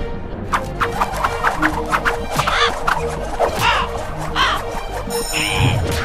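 Cartoon sound effects of a crow-like bird squawking several times amid a flurry of quick scuffling hits, over background music.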